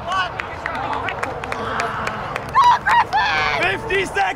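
People shouting and calling out during a soccer game, the loudest shouts coming about two and a half to three and a half seconds in, with scattered short sharp knocks among them.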